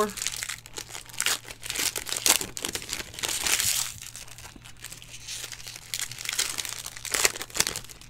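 Plastic foil wrapper of a Panini football card pack crinkling as it is torn open and the cards are slid out, in several irregular bursts.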